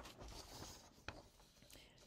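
Faint rustle of a printed paper sheet being lifted and held up, with one soft click about a second in.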